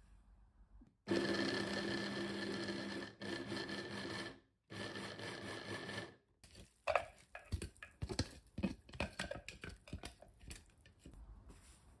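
Small electric food chopper mincing onion, its motor run in three pulses, the first about two seconds long and the next two a little over a second each. After that comes a run of light clicks and knocks.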